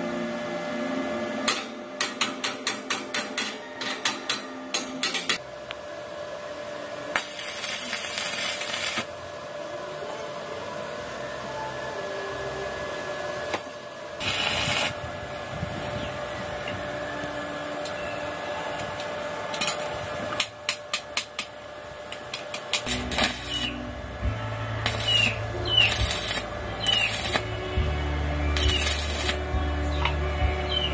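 Stick arc welding on a steel tube frame: hissing, crackling bursts of the arc, each a second or two long, several times. Between them come runs of quick, sharp metal taps and clicks.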